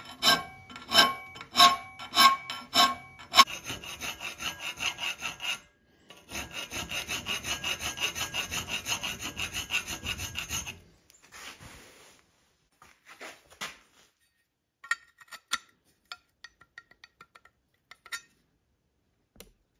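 Round file rasping back and forth in a slot in heavy steel angle clamped in a vise. The first strokes are slower and ring with a metallic note; then come quicker, even strokes, about four a second, stopping about eleven seconds in. Scattered light metal clinks follow as a square steel bar is tried in the notch.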